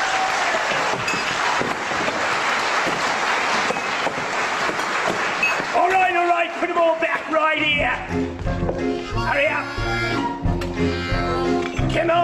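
Stage musical number with cast voices and accompaniment: a dense noisy wash of sound for about the first half, then band music with a pulsing bass beat and voices singing or calling over it.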